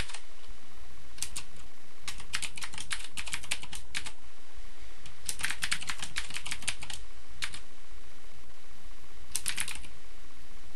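Computer keyboard typing: four runs of quick keystrokes with pauses between them, the longest run lasting nearly two seconds.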